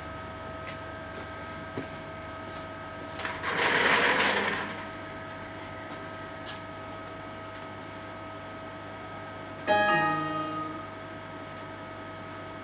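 A steady high electrical whine, with a loud burst of rustling about four seconds in and a sudden short ringing tone near the end that fades over about a second.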